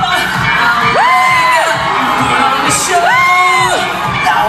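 Loud live dance music with a steady beat playing over a cheering crowd; two long whoops stand out, each rising, held and falling, about a second in and again about three seconds in.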